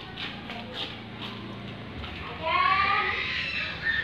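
A single drawn-out animal call with a rising, then falling pitch, starting about two and a half seconds in and lasting about a second, after a few faint knocks in the first second.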